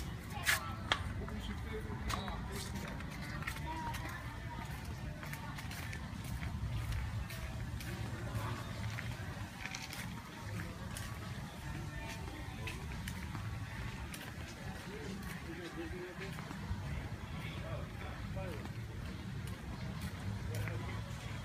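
Outdoor ambience while walking: faint distant voices and background music over a steady low rumble, with scattered light clicks.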